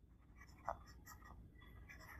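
Near silence with the faint taps and scratches of a stylus writing on a tablet screen, one tap a little louder about two-thirds of a second in.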